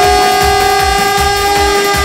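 Electronic arranger keyboard holding one long, loud, horn-like synth note over a steady electronic drum beat.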